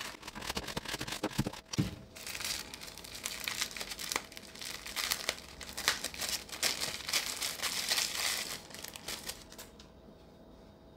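Thin plastic packaging bags crinkling and rustling in the hands as small accessories are unwrapped. The crackles are dense and irregular and die down near the end.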